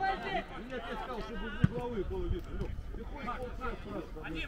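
Several men's voices calling and shouting to one another across a football pitch, with no clear words, and a single sharp knock about one and a half seconds in.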